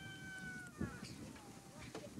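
Faint outdoor ambience with a distant high-pitched call, held for about a second and falling slightly, then a soft knock and a fainter falling call.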